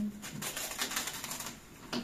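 Clear plastic wrap being pulled off its roll and wound around plastic-bagged parts: a rapid run of small crinkling crackles that dies away in the second half.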